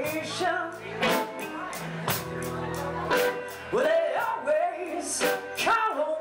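Live blues-rock band playing a slow number: a woman singing over two electric guitars, bass guitar and a drum kit, with a drum hit about once a second.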